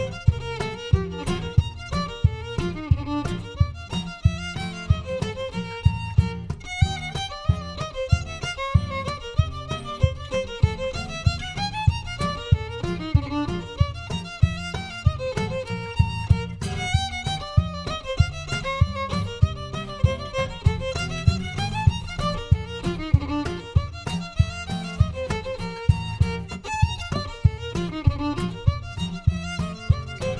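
Live acoustic folk trio playing a fiddle tune: the fiddle carries the melody over strummed acoustic guitar and a steady cajon beat.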